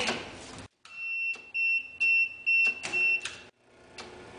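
Electronic alarm buzzer on a PLC trainer panel beeping in a run of about five short, high, steady pulses, two or three a second, with a few sharp clicks among them. The sound cuts in and out abruptly.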